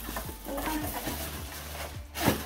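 Rustling and light knocks of cardboard packaging and plastic wrap being handled as a box is unpacked.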